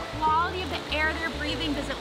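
Background music: a steady bass line under a gliding high melody.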